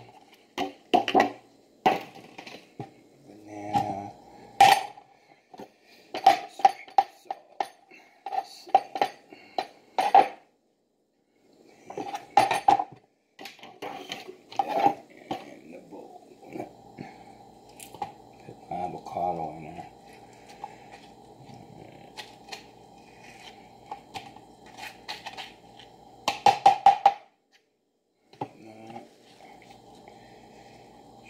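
A metal spoon scraping and tapping against avocado skin and a small bowl, making a run of short, sharp clicks and knocks, with spinach leaves being handled in between.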